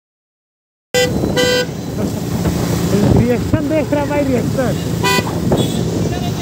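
Silence for about a second, then sound cuts in with two short vehicle horn honks in quick succession. Voices follow, and another short honk comes near the end, over traffic noise.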